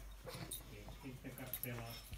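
A beagle whimpering softly while she paws and noses into a blanket on a sofa, with fabric rustling.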